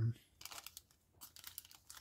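Faint crinkling of a thin clear plastic bag being handled, a string of small scattered crackles.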